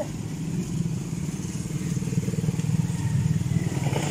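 Small motorcycle engine running steadily, slightly louder toward the end.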